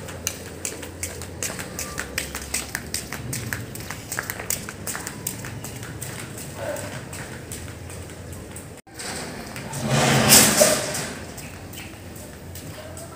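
Rubber flip-flops slapping on a concrete yard in a quick run of footsteps, about two to three slaps a second, as a man walks under a heavy load. Near the end a louder rushing noise swells and fades.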